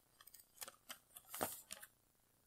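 A few faint, short clicks and ticks, the loudest about a second and a half in.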